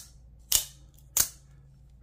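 Steel-framed Maxace Medusa 2.0 out-the-front knife cycling its spring-driven blade: two sharp snaps about two-thirds of a second apart as the blade retracts and fires.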